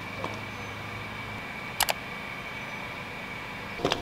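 Smartphone camera shutter sound, a quick double click, heard twice: about two seconds in and again at the very end, over a faint steady hum.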